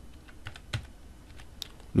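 Computer keyboard being typed on: several short, irregular key clicks.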